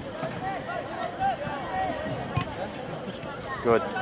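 Indistinct voices of players and spectators calling out across a soccer field, over a low background hum, with one louder shout near the end.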